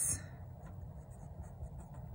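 Pen writing on a paper workbook page: faint scratching of the pen tip over a low steady room hum.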